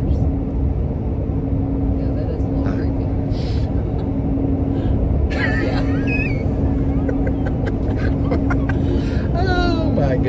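Steady low road and engine rumble inside a moving pickup truck's cab, with a constant low hum under it. A burst of laughter comes about five seconds in, and a voice starts up near the end.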